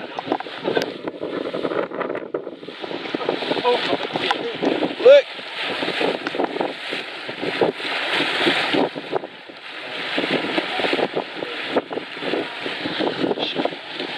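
Wind buffeting the microphone over the rush of a boat's bow wave breaking along the hull.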